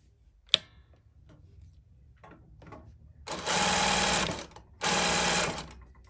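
Reliable 2300SZ industrial zigzag sewing machine stitching in two short runs of about a second each, starting a little past halfway. There is a single sharp click about half a second in.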